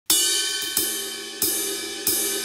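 Cymbal on an electronic drum kit, struck three times about two-thirds of a second apart. Each hit rings and fades before the next, counting the band in.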